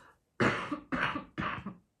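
A woman coughing: three coughs in quick succession.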